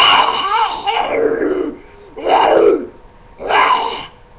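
A girl's voice doing a demon impression: three loud drawn-out vocal calls, the first long and rising and falling in pitch, then two shorter ones.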